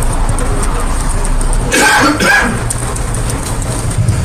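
Steady low rumble of background room noise, with a short voice-like sound or cough about two seconds in.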